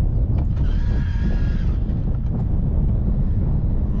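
Steady wind buffeting the microphone, a heavy low rumble throughout. A faint, thin, high whine rises over it from about half a second in and lasts a little over a second.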